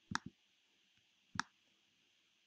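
Computer mouse clicks: two quick clicks close together just after the start, then a single click near the middle.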